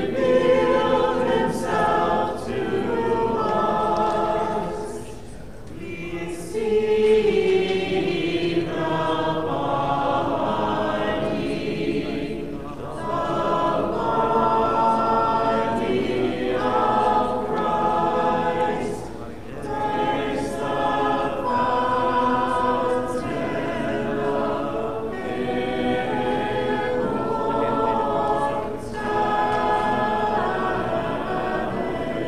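Church choir singing Orthodox liturgical chant a cappella, phrase after phrase with brief breaths between.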